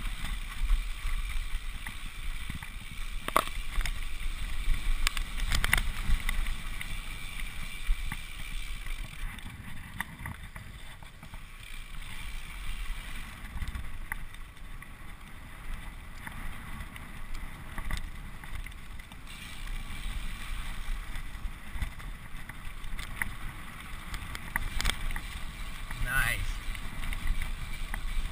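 Mountain bike riding down a bumpy dirt trail: steady tyre and wind noise, with several sharp knocks and rattles of the bike over bumps.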